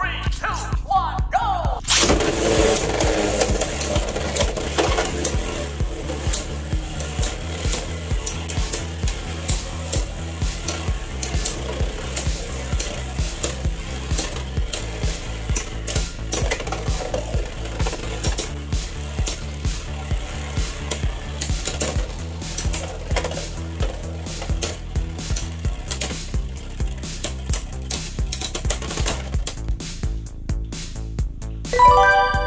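Background music with a steady beat plays over two Beyblade X spinning tops in a plastic stadium. They are launched with a sharp hit about two seconds in, then spin and knock together, with many small clicks throughout.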